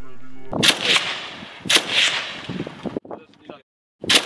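Gunshots from a PK-type belt-fed machine gun: loud single shots in two close pairs, each trailing a long rolling echo, then a few fainter shots. The sound drops off abruptly about three seconds in.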